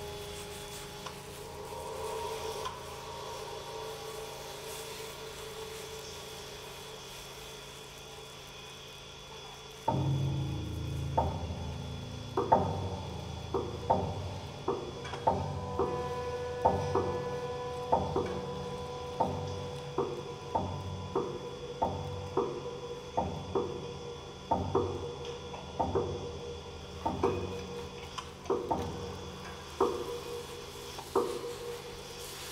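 Experimental chamber music for pianos and percussion. Quiet sustained tones with a rubbing texture give way, about a third of the way in, to a sudden loud entry and then a steady run of sharp strikes, about one and a half a second, over ringing tones from a grand piano played inside on its strings.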